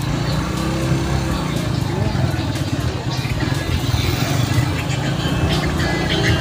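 A motor vehicle engine running with a steady low rumble, with voices and music in the background.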